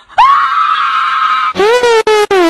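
A person screams, one long high-pitched scream held for over a second, followed near the end by a second, lower yell that falls in pitch.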